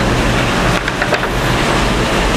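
Steady rushing background noise, even throughout, with a few faint light ticks about a second in.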